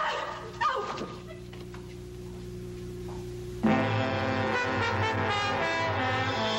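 A woman crying out twice near the start, then a low steady hum, then a brass-led dramatic film score that starts suddenly a little over halfway through and is the loudest sound.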